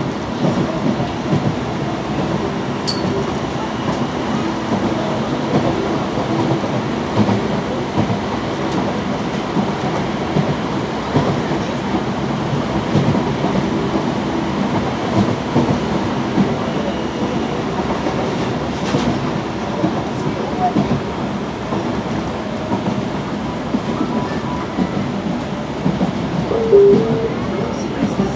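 Mexico City Metro Line 12 CAF FE-10 steel-wheeled train running at speed along the elevated track, heard from inside the car as a steady running noise.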